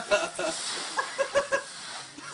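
A person laughing in short, high-pitched bursts, with a steady rustle of dry leaves underneath.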